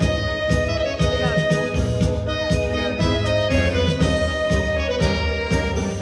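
Live dance-band music: an instrumental passage of an accordion-led tango, with sustained melody notes over a steady beat of about two strokes a second.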